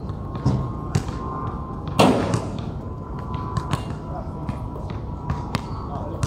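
A basketball being shot and bounced on a hard outdoor court: a few light thuds, and about two seconds in a loud hit of the ball against the hoop that rings briefly.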